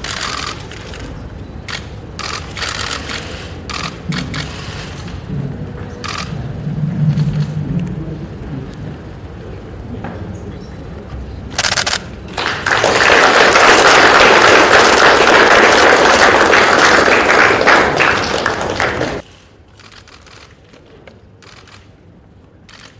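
Camera shutters clicking in quick runs, then a round of applause that starts about twelve seconds in, runs steadily for about six seconds and cuts off suddenly; the applause is the loudest part.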